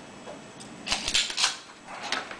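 Plastic desoldering pump being picked up and handled over a circuit board on a workbench: a quick cluster of scraping and clicking strokes about a second in.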